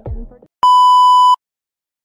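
The tail of an edited pop track fades out, then a single steady electronic beep at one pitch sounds for about three quarters of a second, starting about half a second in.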